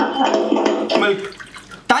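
Liquid pouring from an aluminium drink can into a glass tumbler, the stream running and then tailing off a little over a second in.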